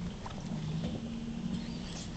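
Steady low hum with a few faint soft taps from a small dog and his rubber ball moving on carpet.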